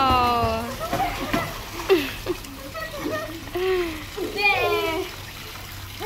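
Pool water splashing and sloshing as swimmers move through it, under short calls from children's and a woman's voices. A drawn-out, falling 'wow' trails off in the first half-second.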